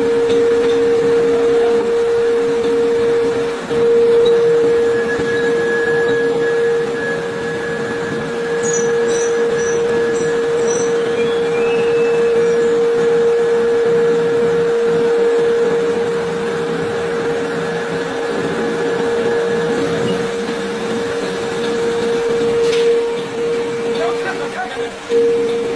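Ring rolling machine running: a steady hum holding one tone, over a constant rush of machine noise.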